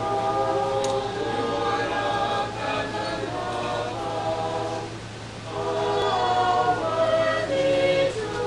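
A choir singing a hymn in sustained phrases, with a short break between phrases about five seconds in.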